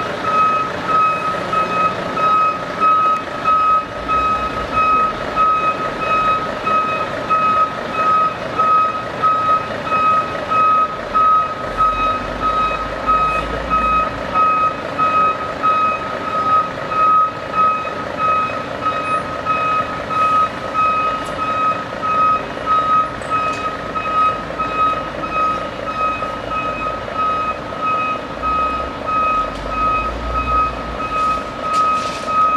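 Reversing alarm of a heavy dump truck beeping steadily, a little faster than once a second, over the running diesel engines of the trucks.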